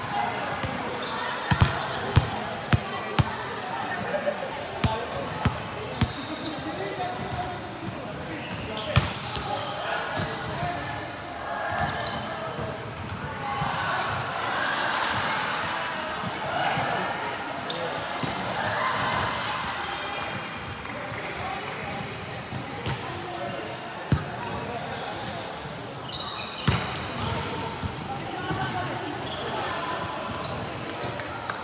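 Volleyball being struck and bouncing on the court in a large sports hall: a quick run of sharp smacks in the first few seconds, another about nine seconds in, and two near the end. Players' indistinct voices and calls echo in the hall throughout.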